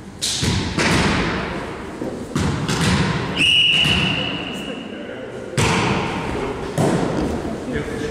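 Volleyball hits echoing in a gym: a series of sharp slaps of the ball off hands and floor, each fading out slowly. Near the middle a referee's whistle blows one steady note for about a second and a half, and then the slaps pick up again.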